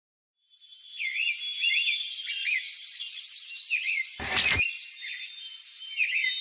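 An outdoor ambience of birds chirping over a steady high insect trill fades in. It is broken by a brief burst of noise a little after four seconds in.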